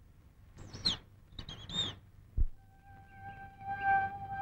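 Two short, high bird calls about a second apart, each a quick gliding chirp, followed by a soft low thud. About two and a half seconds in, quiet film score fades in with long held flute-like notes.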